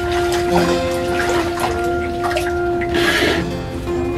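Rice being washed by hand in an aluminium pot of water: water sloshing and splashing, with a louder splash about three seconds in, over background music with held notes.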